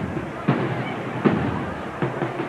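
The bass drum of a procession band beating out a slow march, one heavy hit about every three quarters of a second, with a murmur of voices underneath.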